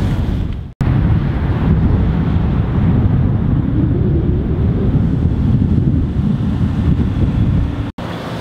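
Wind buffeting the camera microphone: a loud, steady, low rumble, cut off for an instant about a second in and again just before the end.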